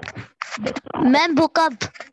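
A person's voice coming through an online video call, with short scratchy noise from the microphone in the first half-second.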